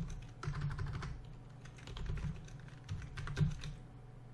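Typing on a computer keyboard: an irregular run of key clicks, with a short lull about halfway and another near the end.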